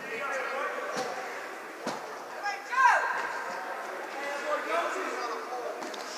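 Ice rink ambience: distant, echoing voices from the arena, with a louder falling call about three seconds in and a couple of sharp knocks.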